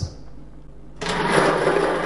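A lottery ball-draw machine starting up about a second in: a steady mechanical running noise as the balls are set mixing for the draw.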